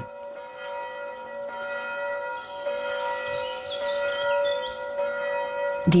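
Church bells ringing, a steady blend of several overlapping bell tones that swell and fade slightly.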